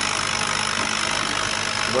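CO2 laser engraver running while it engraves a glass bottle on its rotary roller attachment: a steady machine noise with a faint low hum.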